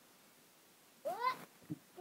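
Quiet room tone, then about a second in one short meow that rises and falls in pitch.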